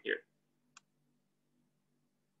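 A single short, sharp click a little under a second in, from picking a tool in an on-screen drawing program, over a faint steady low hum.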